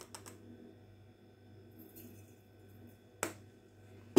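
Quiet room with a steady low hum, a few light clicks near the start and one sharp click or tap about three seconds in.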